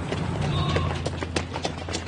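Running footsteps of several people slapping on pavement, quick and irregular, over a low steady hum.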